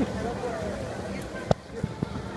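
Faint background voices with a single sharp knock about one and a half seconds in, followed by a smaller one.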